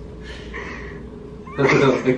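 A faint breathy sound, then a short, loud voiced cry from a person near the end, a squeal-like vocal sound rather than words.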